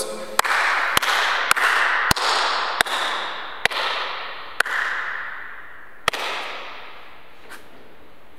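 Slow hand claps, about nine sharp claps spaced unevenly and growing sparser. Each one rings out in the long echo of a large, empty sports hall.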